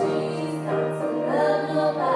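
Female vocals sung into a microphone over grand piano accompaniment, the voice holding long notes that change pitch a few times.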